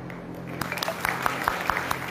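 A fast, even beat of sharp percussive strikes, about five a second, starting about half a second in.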